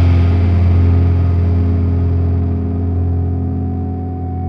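A rock band's sustained chord ringing out: several steady pitched tones over a strong low note hold while the high end slowly dies away and the whole sound gradually fades.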